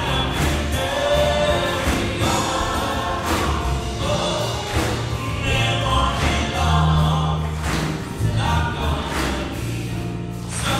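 Live band performing a gospel-style song: male and female voices singing together over guitar, drum kit and keyboard, with a steady drum beat.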